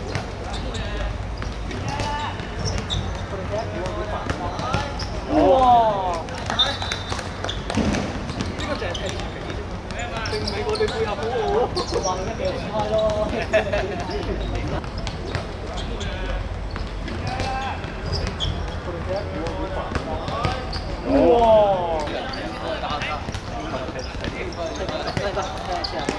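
Football being kicked and bouncing on a hard outdoor court in a five-a-side game, sharp thuds scattered through, over players' shouts and calls. Two loud shouts stand out, about five seconds in and again near twenty-one seconds.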